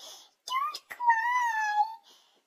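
Cavalier King Charles spaniel puppy whining: a short rising note, then one long, high, slightly falling moan.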